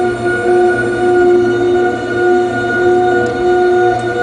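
Interference from a computer screen picked up by an unpowered crystal radio and heard through its added audio-out cable: a continuous electronic drone of several steady tones over a low hum, swelling and dipping about once a second. It is an interference pattern or resonant harmonic whose cause is not known.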